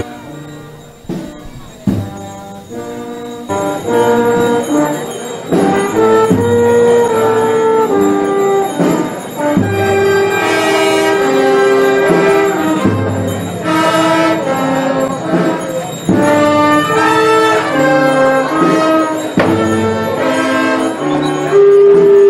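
Brass band playing a march in long held chords. A few sharp knocks sound in the first seconds, and the full band comes in about three and a half seconds in.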